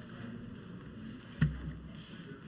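Faint background chatter and shuffling of a church congregation greeting one another. One sharp knock with a short low thud, the loudest sound, comes a little past halfway.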